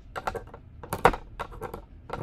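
Plastic toy frog counters clicking and knocking against the pegs of a rail as they are picked up and set down by hand: a quick string of light, irregular clicks, the loudest about a second in.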